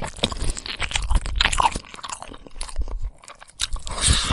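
Lion chewing and crunching on food, a run of irregular sharp cracks and crunches that eases off for a moment about three seconds in.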